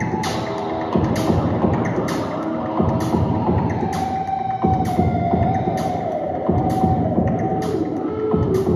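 Free, abstract electric-guitar sound art. Sustained, slowly bending guitar tones, typical of feedback from the guitar held against its amplifier, sound over a dense low drone, with a regular pulse a little more than once a second.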